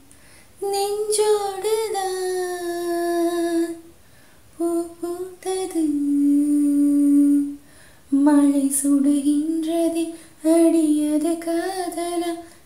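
A woman singing a Tamil film song unaccompanied, in four long phrases of held, wavering notes with short breaks between them.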